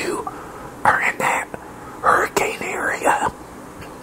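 A man whispering close to the microphone in two breathy stretches, a short one about a second in and a longer one from about two seconds.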